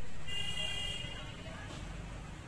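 A short vehicle horn toot, a high steady tone lasting under a second, over a low steady background rumble.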